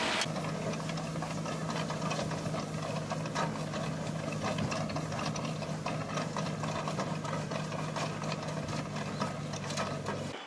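Tractor engine running at a steady pitch while pulling a potato digger through soil, with irregular rattling and clatter from the implement.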